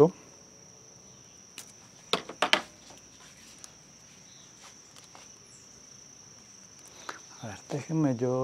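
A cricket's steady high-pitched trill, with a few short, faint clicks and taps about two seconds in.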